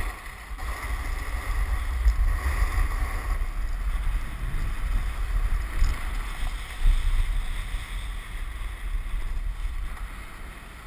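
Wind buffeting a moving action camera's microphone, a deep uneven rumble, with the hiss of sliding over snow.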